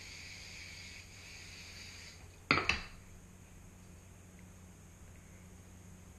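Two quick hard clinks about halfway through, a small foundation bottle set down on a hard surface, over a faint steady electrical hum.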